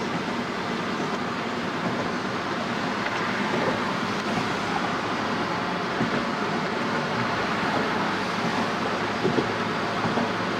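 Steady road noise heard from inside a moving car's cabin: tyres and engine at highway speed, with a couple of light bumps late on.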